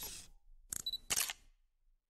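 Camera shutter sound effect: a short whoosh, then two sharp shutter clicks less than half a second apart, the second the loudest.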